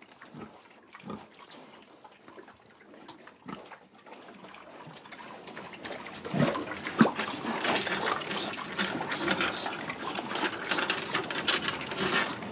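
Pigs grunting, a few low single grunts at first. From about halfway it swells into a louder, busy din of a pen of pigs, with sharper squeal-like cries.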